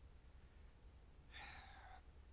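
Near silence with faint room hum, then about a second and a half in a man's short breath drawn in before he speaks again.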